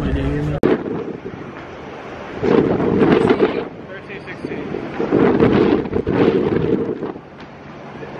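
Wind buffeting the microphone in gusts, strongest about two and a half seconds in and again about five seconds in, with a brief voice at the very start.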